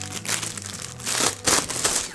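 Thin clear plastic wrapping crinkling as a keyboard case is pulled out of it, with louder crackles in the second half.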